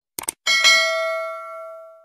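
Two quick clicks, then a bell-like ding struck twice in quick succession that rings and fades away over about a second and a half. This is the click-and-notification-bell sound effect of a subscribe-button animation.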